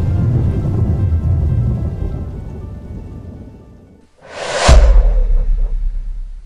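Cinematic title-sequence sound design: a low rumble with faint sustained music tones fades away, then a rising whoosh ends in a sudden deep boom about four and a half seconds in, which rings on as a low rumble.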